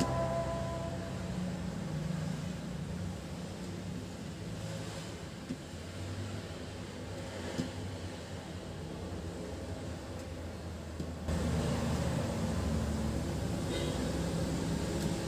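A low, steady mechanical hum that steps up louder about eleven seconds in, with the tail of background music fading out at the very start.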